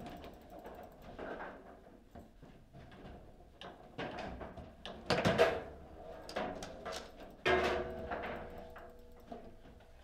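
Table football in play: irregular sharp knocks and clacks of the ball against the player figures and of the rods striking the table. The loudest knocks come about five seconds in, and a ringing clatter follows about seven and a half seconds in.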